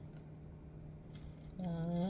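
Faint, soft handling sounds of sliced tomatoes being taken from a plastic container and laid onto lettuce, with a couple of light ticks, over a steady low hum. A woman's voice starts about one and a half seconds in.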